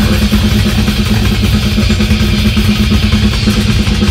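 Live death metal band playing loud: drums and distorted guitars in a dense, fast-pulsing wall of sound over a repeated low note.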